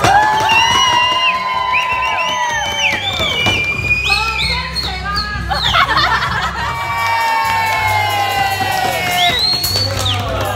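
A group of people singing loudly together in long, drawn-out notes that sag in pitch, with cheers over it and background music underneath. It is typical of a birthday song sung at the table.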